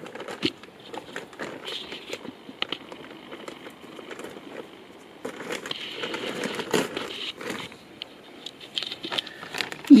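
Plastic compost bag crinkling and rustling as it is handled, with scattered irregular clicks and crackles.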